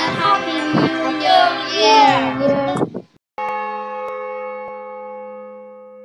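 Many children's voices calling out together, cut off about three seconds in. After a short gap a single bell-like chime rings and slowly fades.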